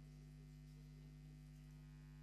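Near silence with a steady low electrical hum on the recording.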